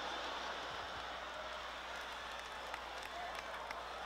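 Theatre audience applauding and laughing, a steady wash of clapping that slowly eases off.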